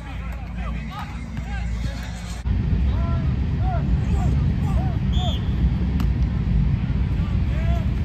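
Football practice field ambience: scattered distant shouts and calls from players and coaches over a steady low rumble. The rumble gets louder about two and a half seconds in, and there is one sharp snap about six seconds in.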